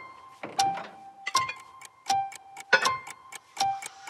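Clock-like tick-tock: sharp, ringing ticks alternating between a higher and a lower pitch, about one every three-quarters of a second, with light music.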